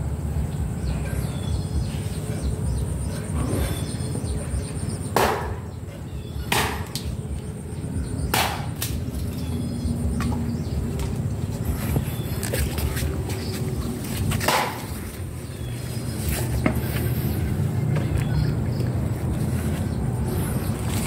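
Low rumble of wind and handling on a handheld phone's microphone outdoors among garden trees, broken by a few sharp clicks and knocks. A thin steady high tone runs through the first few seconds.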